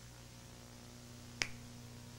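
A single sharp finger snap about one and a half seconds into a dramatic pause, over a faint steady low hum.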